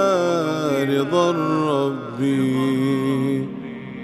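A cappella Arabic nasheed: voices only, no instruments, a sung melody that holds a long note about two seconds in and then begins to fade out.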